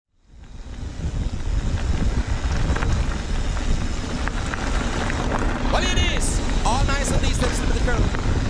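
Wind buffeting an action camera's microphone on a moving mountain bike, with tyres rolling over a gravel trail, fading in over the first second. About six seconds in, a voice comes in over the noise with rising and falling pitch.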